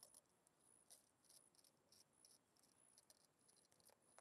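Near silence, with faint, brief high-pitched chirps now and then.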